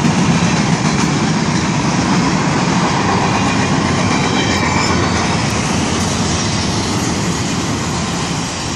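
CSX intermodal freight train cars rolling past, a loud steady rumble of steel wheels on rail.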